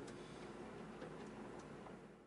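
Quiet room tone: a faint steady hiss with a few soft, scattered ticks.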